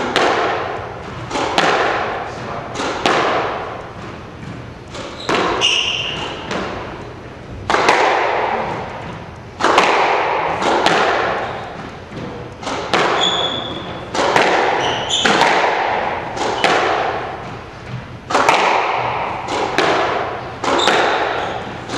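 A squash rally: the ball is struck by racquets and hits the walls with a sharp crack every second or two, each one echoing around the enclosed court. Brief high squeaks of court shoes on the hardwood floor come in between.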